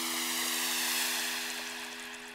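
Ambient sleep music with a held low synth chord under a rushing, water-like wash. The wash swells about a second in and then fades as the track dies away.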